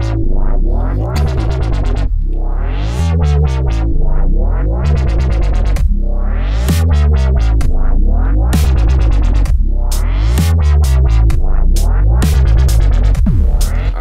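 A dubstep-style electronic track playing back from FL Studio: a heavy wobble bass with a rising synth sweep repeating about every two seconds, over programmed drum hits.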